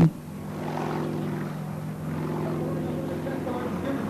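Piston engine of a small propeller aerobatic plane, heard as a steady, even drone while the plane flies overhead.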